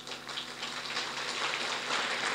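Audience applause, many hands clapping, starting suddenly and building in loudness.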